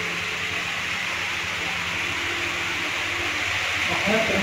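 Reverse-osmosis water purifier running: a steady hiss of water flowing through the filters, with a faint low hum from the unit's pump.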